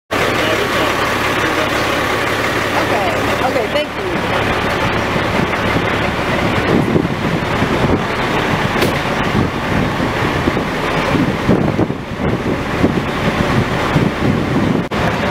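Running vehicle engines and road traffic, a steady noisy rumble with a constant low hum, with indistinct voices mixed in.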